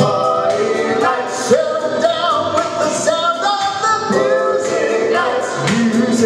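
Male vocal harmony group singing held, wordless harmony notes over a backing track with a beat.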